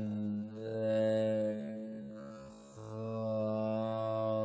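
Droning chant-like music: a low held note with shifting, vowel-like overtones, sung in two long phrases with a short break just before the middle.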